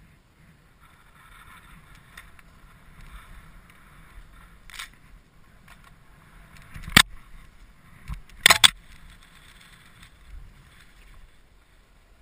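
Skis hissing faintly through powder snow, with low wind rumble on the microphone. Three sharp knocks land on or near the helmet camera about five, seven and eight and a half seconds in; the last is a loud double knock.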